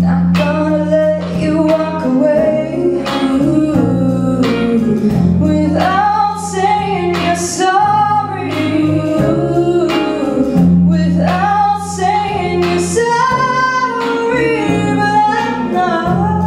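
A female lead vocalist sings a pop ballad into a microphone, backed by other singers and a live band of drums and guitar. Steady bass notes and a regular drum beat run under the melody.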